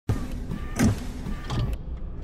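Sound effects for an animated robot intro: mechanical whirs and sweeping swells over a steady low hum. The sound starts abruptly, is loudest about a second in, swells again after a second and a half, then cuts off sharply.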